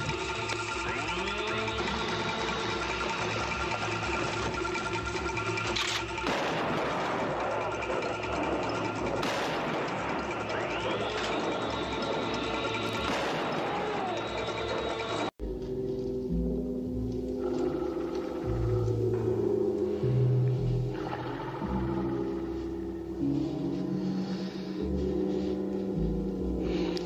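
A film soundtrack. For about fifteen seconds it is a dense, noisy action mix with sounds that rise and fall in pitch. It then cuts off abruptly and gives way to film score music with sustained tones.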